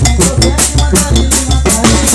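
Tamborazo percussion playing a fast, steady beat: the tambora bass drum with a cymbal struck on top, together with tarola snare drums, about four bass hits a second.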